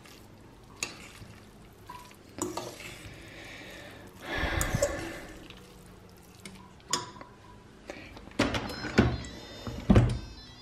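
A spoon stirring and scraping a chopped egg and fish filling in a stainless steel saucepan, with scattered light knocks against the pan and a louder scraping rustle about four to five seconds in.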